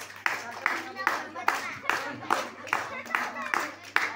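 A crowd clapping together in a steady rhythm, about two and a half claps a second.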